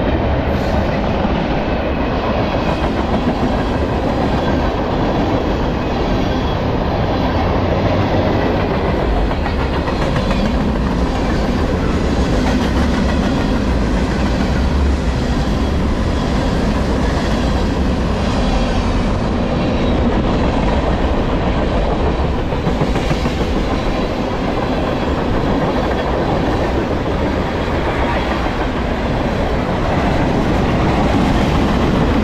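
Freight train cars rolling past close by: a steady, loud rumble and clatter of steel wheels on the rails.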